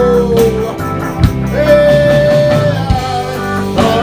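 Live reggae band of electric guitars, bass guitar and drum kit playing. A long high note is held about halfway through, over the bass and drum hits.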